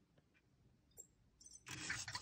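Near silence with faint room tone. There is a faint click about a second in, and a soft, noisy sound begins near the end.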